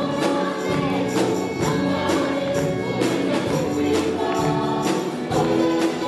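Worship band and a group of women singing a gospel chorus together in Zomi into microphones, over electric guitars and a steady beat of percussion hits about twice a second.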